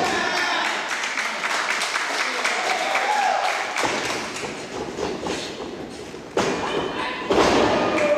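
Wrestlers' bodies hitting the wrestling ring's canvas-covered boards: heavy thuds about four seconds in and twice more near the end, with voices between them.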